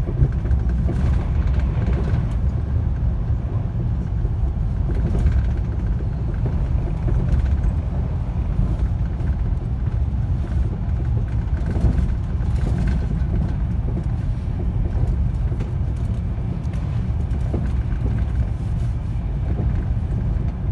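Cabin noise of an Italo high-speed train running at speed, heard from inside the carriage: a steady low rumble.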